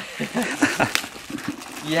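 Indistinct voices talking, then a loud drawn-out "yes" near the end.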